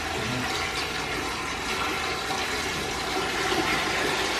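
Garden hose pouring water into a toilet bowl: a steady rush and splash as the bowl fills. With the water supply cut, the bowl is being filled from the hose so that the volume of water overpowers the trap and makes the toilet flush.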